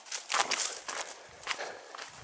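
Footsteps on dry, stony dirt: several short, irregular steps as someone walks across bare ground.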